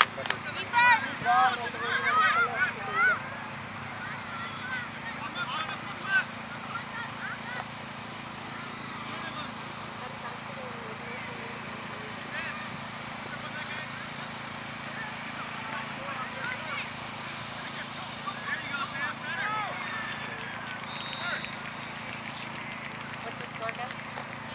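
Distant shouts and calls from youth soccer players and spectators across an open field, loudest in the first few seconds and then occasional and faint over a steady low background.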